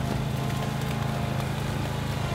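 Zero-turn mower engine running steadily, a low even drone.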